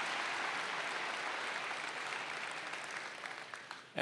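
Large audience of students applauding, the clapping fading steadily away over about four seconds.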